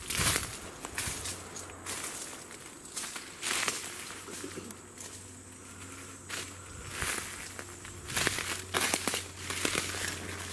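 Footsteps crunching through dry leaf litter and twigs on a forest floor, in irregular crunches and crackles, with a cluster near the end. A low steady hum runs in the background from about a second in.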